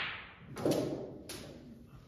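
Snooker balls on a full-size table: a sharp click about half a second in, followed by a duller knock that fades out, then a second lighter click a little later.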